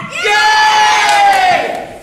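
Children's voices shouting together in one long, loud held cry that drops in pitch as it ends.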